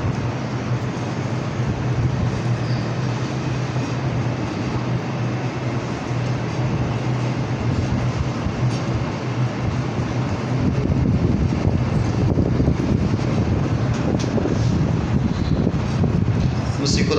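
Steady rushing noise over a low hum, growing a little louder about ten seconds in: a wall-mounted air conditioner running in the room.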